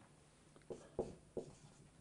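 Marker pen writing on a whiteboard: a few faint, short strokes, three of them in quick succession in the middle.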